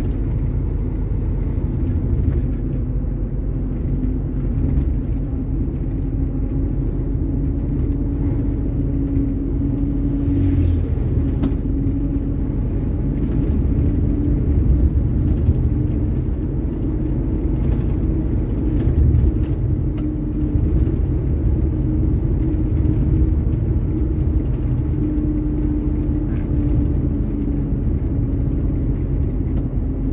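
Truck's diesel engine and tyre noise heard from inside the cab while cruising: a steady low rumble with a humming engine tone that rises and falls slightly.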